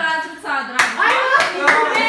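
A young woman's voice, with sharp hand claps cutting in about a second in and again near the end.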